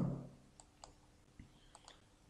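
A few faint, separate computer mouse clicks over a quiet room background.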